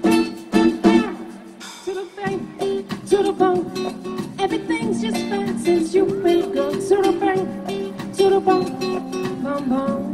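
Live band playing a song, with acoustic guitar to the fore; strummed chords ring out in the first second, then melodic lines carry on over the band.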